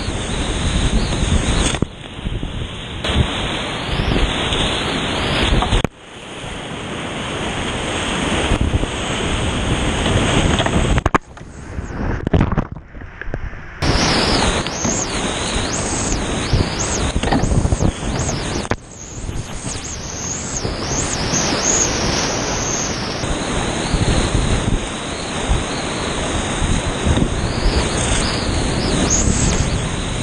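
Whitewater rapids rushing loudly around a kayak, heard close up from a camera on the paddler, with a few abrupt jumps in level and a brief muffled dip about twelve seconds in.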